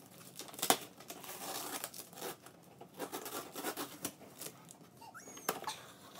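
Packing tape being peeled and torn off a cardboard shipping box and the flaps pulled open: irregular scratchy tearing and rustling, with a sharp click a little under a second in.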